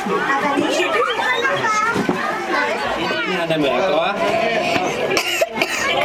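Children's and adults' voices chattering and calling out, overlapping throughout.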